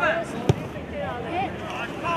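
A football kicked once on an artificial pitch, a single sharp thump about half a second in, with several voices shouting around it.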